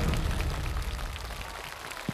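Studio audience applauding as the song's final note and its backing music die away; the clapping fades off toward the end.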